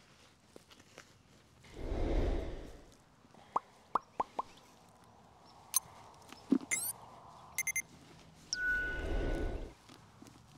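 Sound effects of an animated subscribe-button reminder. A rush of noise comes about two seconds in, followed by four quick pops, then sharp clicks and a short sweep, and a bell-like ring with a second rush of noise near the end.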